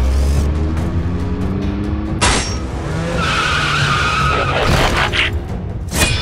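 Action-film sound effects over a music score: a rising whine for the first two seconds, a sharp hit, then a high screech lasting about a second and a half, followed by a few quick hits.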